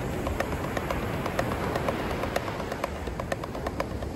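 Wooden drumsticks tapping a drum practice pad in an even stream of strokes, playing the inverted paradiddle (right-left-left-right, left-right-right-left) with slightly stronger downbeat strokes, over a steady low rumble of wind and surf.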